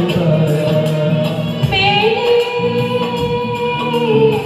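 Live duet singing of a Hindi film song, amplified through microphones over recorded backing music. A long note is held from about halfway through.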